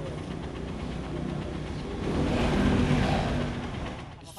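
Engine of a gas-fuelled bajaj auto-rickshaw running, growing louder about two seconds in and easing off near the end.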